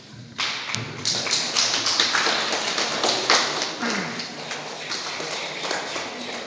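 Audience applauding, a dense spread of hand claps that starts about half a second in and fades out near the end.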